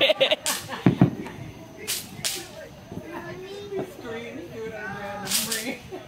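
Backyard consumer fireworks going off: a thump about a second in and several short, sharp hissing cracks, with voices talking faintly.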